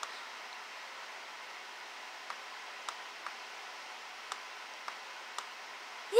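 Quiet room tone: a low steady hiss with a few faint, isolated clicks scattered through it.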